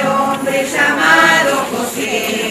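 A group of voices singing a hymn together, a melody held and moving in pitch throughout.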